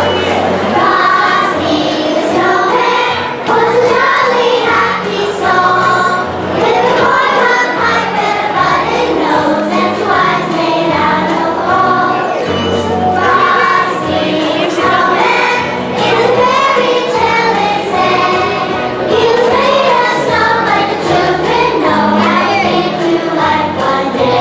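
A children's choir singing a Christmas song together over a musical accompaniment with a steady bass line.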